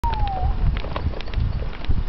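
Footsteps on pavement, heard as scattered clicks over a continuous low rumble on the camcorder microphone. A short falling tone sounds at the very start.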